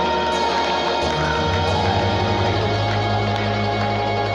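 Church keyboard playing long, held chords, with a low bass note joining about a second in.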